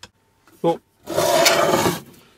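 A rubbing scrape about a second long in the second half, a hand working over the painted steel casing of an old Heatrae water heater. There is a short click at the start and a brief vocal sound just before the scrape.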